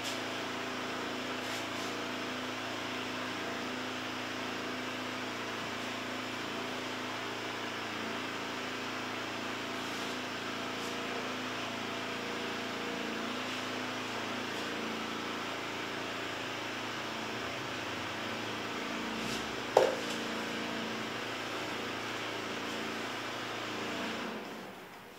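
Steady room hum and hiss, with several low steady tones underneath. One short squeak is heard about twenty seconds in.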